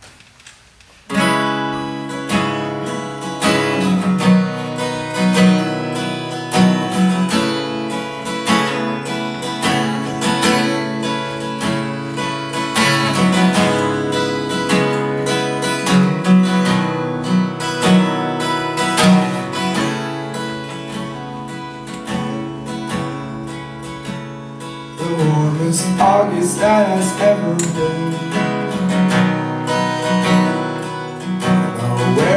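Acoustic guitar starts about a second in, strumming a steady song intro over a repeating low note; a singing voice comes in near the end.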